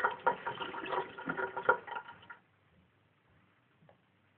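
Water running from a tap into a sink, splashing with a ringing, filling tone, then shut off about two and a half seconds in.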